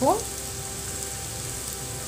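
Sliced onions, curry leaves and green chilli frying in oil in a steel pot, with a steady sizzle.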